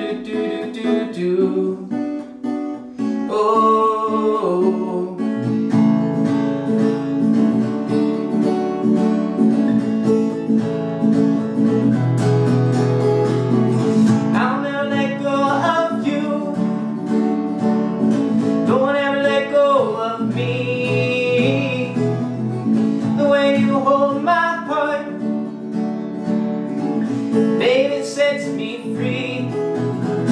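Steel-string acoustic guitar strummed steadily, strung with old extra-light strings. A man's wordless vocal melody comes in over the chords several times.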